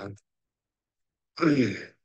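A man's voice trails off into a second of dead silence. About a second and a half in comes one short, breathy voiced sigh from the same speaker.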